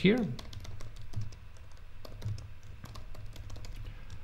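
Typing on a computer keyboard: a run of quick, irregular key clicks as a short phrase is typed.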